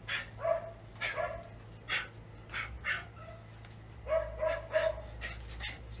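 A small dog yapping in short bursts, a few at the start and a quick run of them from about four seconds in, with sharp breathy bursts in between.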